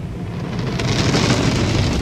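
Tunnel car wash soap, water and cloth wraps scrubbing over the windshield and roof, heard from inside the car. It is a dense rushing patter like heavy rain that builds and brightens about half a second in, over a low steady rumble.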